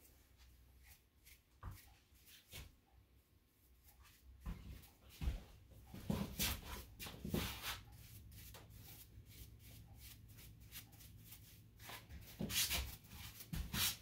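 Soft, irregular brushing and rustling strokes as cut hair is cleaned off the face, ear and neck. They start after about four seconds, with a busier run of strokes near the end.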